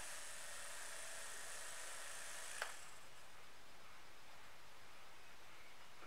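Small battery-powered motor of an electric makeup brush cleaner and dryer whirring as it spins a wet brush dry in its bowl. A small click comes about two and a half seconds in, and the high whine fades soon after.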